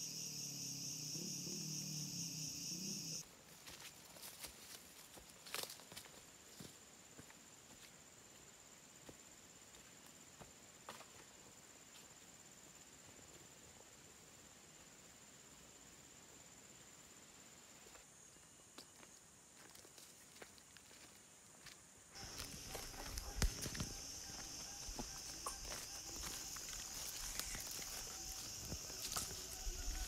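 Footsteps on a dry dirt forest trail, with a loud, high, steady insect drone at the start that cuts off after about three seconds. The drone returns near the end, with more frequent footfalls.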